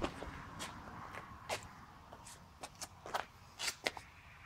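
Irregular light clicks and scuffs, about nine in all, coming closer together near the end.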